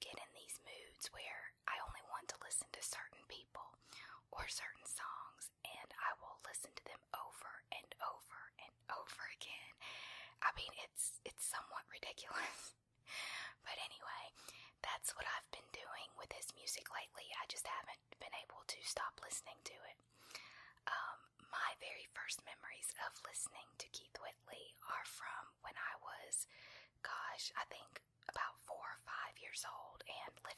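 Close-up whispered speech that goes on in short phrases with brief pauses, over a faint steady low hum.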